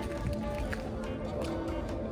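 Music with long held notes.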